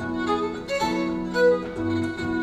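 Fiddle and harp playing a traditional tune together: a bowed fiddle melody over the harp's held low notes.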